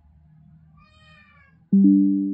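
A faint, wavering high-pitched sound lasting about a second, then, near the end, a sudden loud ringing tone of several pitches that fades away over about a second.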